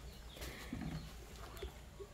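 Quiet background with a few faint bird chirps.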